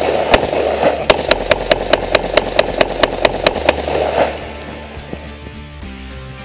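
A rapid string of about fifteen shots from an AR-15 semi-automatic rifle, roughly five a second, stopping about three and a half seconds in.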